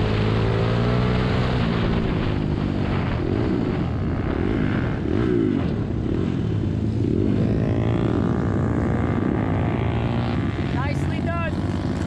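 Ohvale 110M minibike's small single-cylinder four-stroke engine heard from on board, rising and falling in pitch with the throttle as the bike slows down off the track, then settling to a lower, steadier note. A few short rising chirps come near the end.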